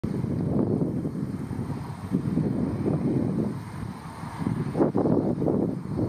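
Wind buffeting the microphone: an uneven low rumble that swells and eases in gusts.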